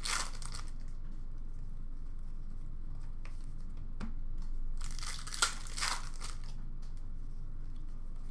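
Foil wrappers of Upper Deck hockey card packs crinkling and tearing as packs are ripped open and the cards handled, in several short rustles; one sharp tick about five and a half seconds in.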